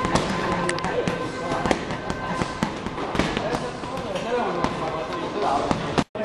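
Busy martial-arts gym during training: sharp smacks of punches and kicks landing on heavy bags and pads, several a second, over voices and background music.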